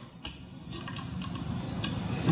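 A few light metallic clicks as a magnetic screwdriver tip picks the steel valve keepers (collets) off a compressed valve spring retainer in an aluminium cylinder head.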